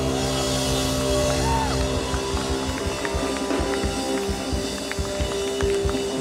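Live pop-punk band music: held, ringing chords over drums.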